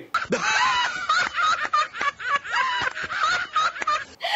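Snickering laughter in quick, repeated bursts that run on without a break, sounding duller than the room audio around it, as if a laughter clip has been dubbed in.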